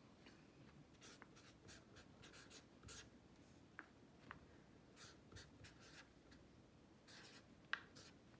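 Felt-tip pen writing on lined notebook paper: faint, short scratching strokes, one for each pen stroke, with a few light ticks as the tip meets the paper.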